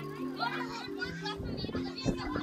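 Children's voices chattering and calling out over background music of held, slowly changing notes.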